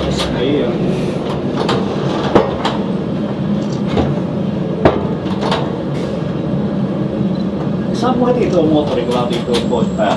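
A Dm7 'Lättähattu' diesel railbus running slowly along the track, heard from inside the cab as a steady engine and running-gear rumble. There are a few sharp knocks from the running gear, the loudest about two and a half and five seconds in.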